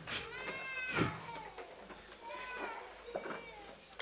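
A person wailing in a high voice: a run of about four drawn-out cries, each rising and falling in pitch.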